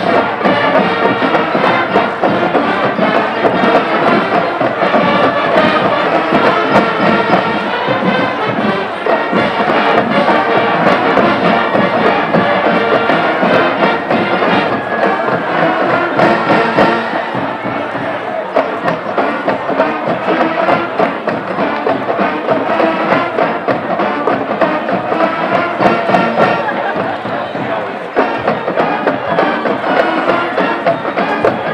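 Marching band playing brass and drums in a stadium, with crowd noise underneath; it drops a little in loudness about halfway through.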